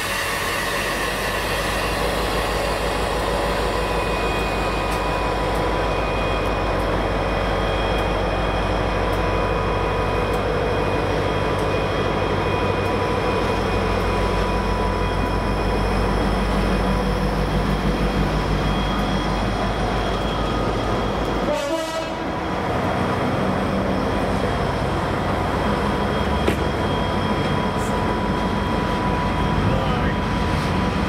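Class 59 diesel locomotive 59201, its EMD two-stroke V16 engine running under power as it hauls a train past, with the coaches rolling by behind. The sound breaks off for a moment about two-thirds of the way through, then carries on.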